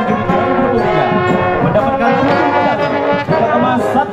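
Marching band brass section, trumpets and mellophones, playing a tune together, loud and unbroken.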